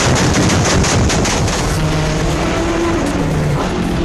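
Loud race car engines running at high revs, the engine note shifting up and down in pitch.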